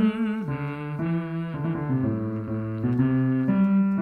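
Keyboard piano playing a short melodic phrase of held notes, with a lower harmony line moving under the melody.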